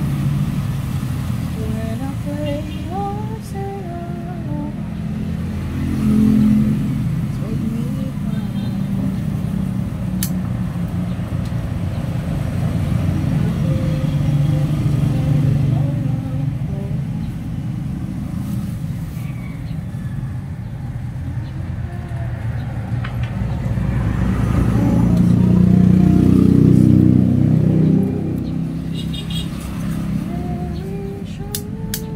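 Steady low rumble, like a nearby motor vehicle or road traffic, swelling louder for a few seconds late on, with faint talking in the background.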